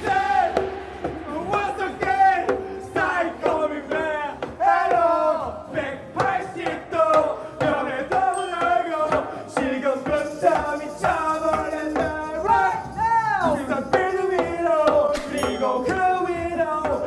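Karaoke singing: several male voices singing and shouting into microphones along with music, loud and continuous.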